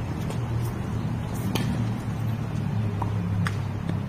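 Tennis ball struck by rackets during a rally: a sharp pop about a second and a half in and another near the end, with a couple of fainter ticks, over a steady low background rumble.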